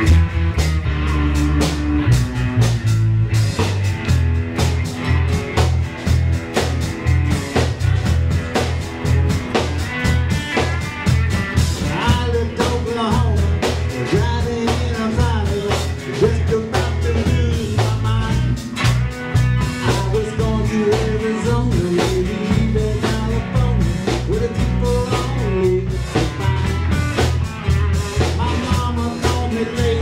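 Live band playing an upbeat rock-and-roll song: electric lead guitar over acoustic rhythm guitar, electric bass and a drum kit keeping a steady driving beat.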